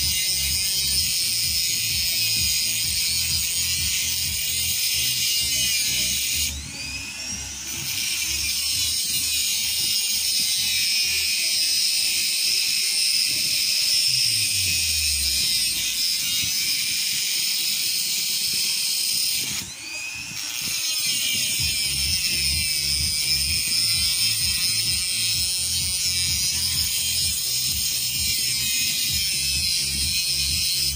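Flexible-shaft rotary tool grinding into the steel of an upper control arm's ball joint, a steady high-pitched whine that stops briefly twice, about 7 and 20 seconds in.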